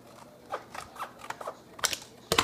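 Red-handled scissors snipping through a clear plastic blister pack, the stiff plastic crackling: a quick run of sharp cuts, the loudest near the end.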